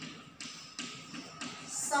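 Chalk tapping and scratching on a blackboard while words are being written: a run of short, separate strokes.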